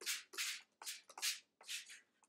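Plastic trigger spray bottle misting water onto paper coffee filters: a short hiss with each squeeze of the trigger, repeated quickly at about three sprays a second.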